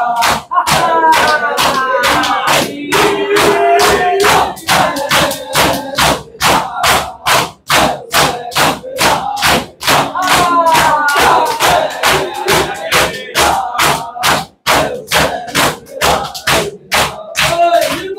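Matam: a group of mourners beating their chests with their open hands in a steady rhythm, about two to three slaps a second. A crowd of men chants and calls out over the beating.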